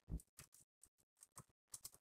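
Faint, irregular clicking of keys on a hardware keyboard as a short entry is typed, about a dozen keystrokes.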